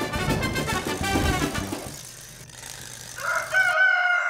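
Music fading out over the first two seconds, then a rooster crowing, one long call starting about three seconds in.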